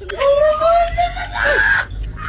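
A high, drawn-out wailing cry held for most of a second, followed by a shorter cry and a burst of breathy, rasping noise near the end.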